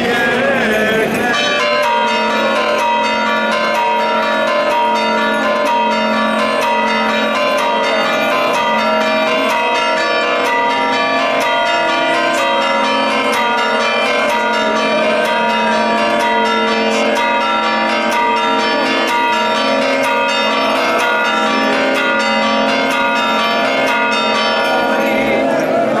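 Church bells pealing rapidly, many overlapping bell notes struck over and over in a dense festive ringing that sets in about a second and a half in: the joyful bells of the Orthodox Easter Resurrection.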